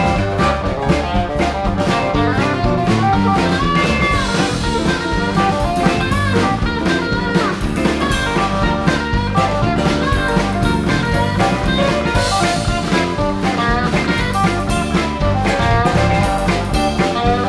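Live rock band playing an instrumental passage: electric guitars, electric bass, keyboards and drums keeping a steady beat, with a lead guitar bending notes around the middle.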